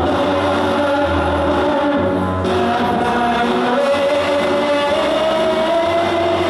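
A woman singing a slow sacred song solo into a handheld microphone, holding long notes, with music underneath.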